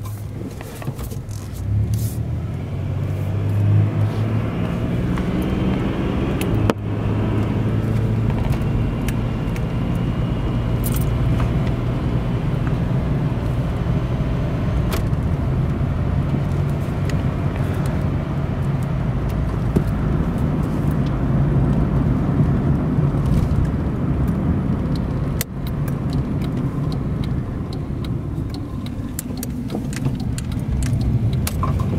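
Buick 3.8-litre V6 of a 1987 LeSabre running under way with its hood removed, heard from inside the cabin. The engine note swells as the car picks up speed in the first few seconds, then holds steady at cruising speed, with two brief drops in level.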